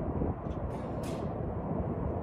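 Steady low rumble of outdoor background noise, with a brief faint hiss about a second in.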